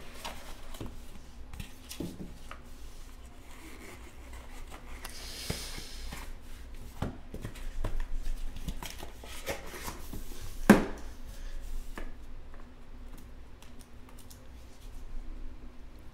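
Hands opening a cardboard trading-card box and handling cards in plastic holders: scattered soft clicks, scrapes and rustles, with one sharper click at about eleven seconds.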